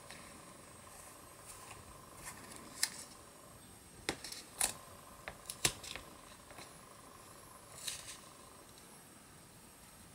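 Quiet, scattered rustles and small taps of paper card being handled and pressed down onto a card, a handful of short sounds with pauses between them.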